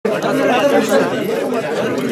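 Many people talking over one another in a crowded room, a steady babble of voices.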